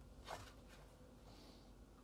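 Near silence: room tone, with one faint brief sound about a third of a second in.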